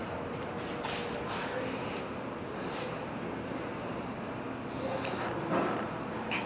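Faint showroom room tone and handling noise from a camera being carried around a parked motorcycle, with a brief louder sound near the end.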